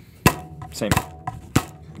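A stretched rubber band snapped down onto a peeled banana on a wooden cutting board three times, sharp slaps about two-thirds of a second apart, sawing into the banana.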